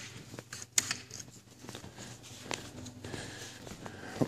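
Soft footsteps and a few scattered clicks and taps over a faint, steady low hum.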